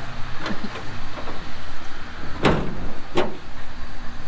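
A heavy cardboard-boxed propane fire pit, about 89 pounds, dragged across a pickup truck's bed toward the tailgate, with two louder scrapes about two and a half and three seconds in. A steady low rumble runs underneath.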